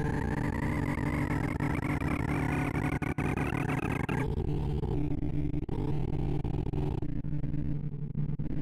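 Sorting visualizer's synthesized tones: a rapid, dense stream of beeps whose pitches follow the values being compared and written as Weave Merge Sort merges a reversed array of 2,048 numbers. A slowly rising sweep runs through the first half, and the higher tones drop out about four seconds in.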